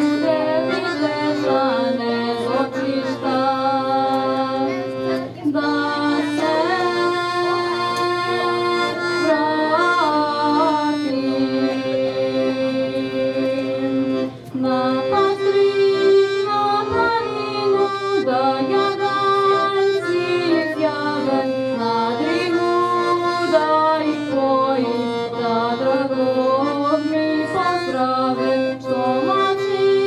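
Piano accordion playing held chords under a singing voice that carries a wavering melody, as one continuous song.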